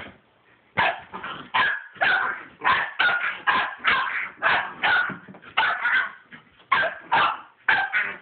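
Red-nose pit bull puppy barking in play, a fast run of short, high barks, about three a second, starting about a second in.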